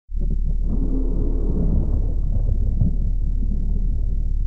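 A low, steady rumbling drone, the sound design of an animated title sequence.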